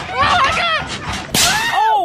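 Young men yelling in rough play, with one sharp smack about 1.4 seconds in, followed by a long cry that falls in pitch.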